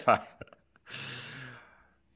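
The tail of a man's word, a small click, then a breathy exhale lasting about half a second, the kind heard in a short laugh.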